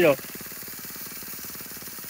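Petrol brush cutter with a wheat-cutting blade and gathering frame, its engine running steadily at low throttle with a fast, even putter.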